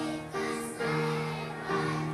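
A choir of young children singing together, a melody in held notes that change pitch every half second or so.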